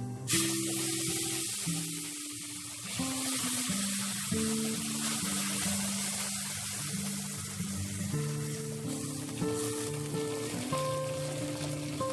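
Water poured into a hot pot of onion and whole spices fried until dark, hitting the hot oil with a sudden loud sizzle about a quarter second in that then hisses on steadily.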